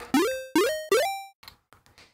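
Three chiptune blips from a Sytrus synth patch in FL Studio, played in quick succession. Each note sweeps sharply upward in pitch through its pitch envelope, then holds briefly and decays. Each blip settles a little higher than the last.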